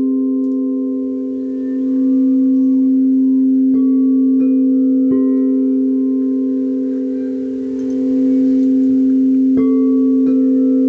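Crystal singing bowls ringing in a steady, layered drone that dips and swells twice, with a few higher struck notes chiming in around four to five seconds in and again near the end and ringing on.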